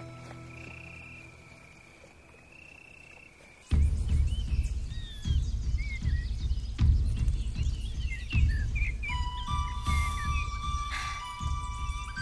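Soft held music fades out, then a soundtrack nature ambience cuts in suddenly: frogs croaking in low, irregular pulses with high chirping calls over them. A light chiming music tune comes in about nine seconds in.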